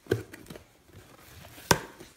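Cardboard box being pulled and handled open by small hands: a soft knock just after the start and one sharp snap near the end.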